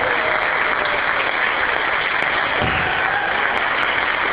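Audience applauding, a steady, dense clapping that fills the room right after the choir's song ends.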